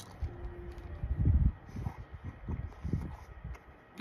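A man chewing a mouthful of jelly beans: a run of low, uneven chomps starting about a second in, two or three a second, fading near the end.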